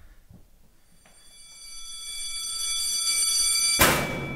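An electric bell or buzzer, like a school bell, sounds a steady high tone that swells louder over about three seconds. It is cut off near the end by a single loud bang, such as a metal locker door slamming.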